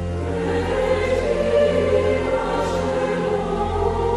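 Music with a choir singing over a steady low drone that holds throughout; the voices fill out soon after the start.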